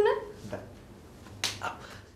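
A single sharp slap, a hand striking a face, about one and a half seconds in.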